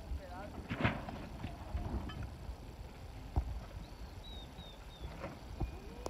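Open-air background with distant voices calling out a few times, loudest about a second in, and a short run of four faint high chirps about two-thirds of the way through.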